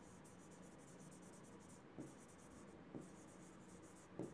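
Very faint scratching of a stylus writing on a touchscreen board, with a couple of light taps about two and three seconds in.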